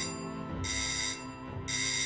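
A phone ringing: repeated bursts of a bright electronic ring, each about half a second to a second long, over soft sustained background music.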